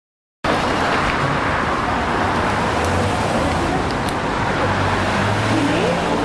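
Street traffic noise with a steady low engine hum, cutting in abruptly about half a second in; a murmur of voices sits underneath.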